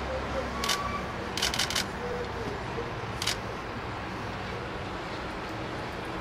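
Steady road traffic noise from a busy street, cars and buses running, with a few sharp clicks: one about a second in, a quick run of three or four soon after, and one more a little past three seconds.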